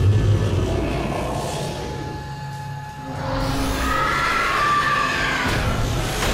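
Tense, ominous background score from an animated action cartoon, with a deep low rumble in the first half. A little after the midpoint a wavering high tone rises over it.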